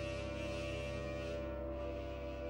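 Orchestral music with a held brass chord.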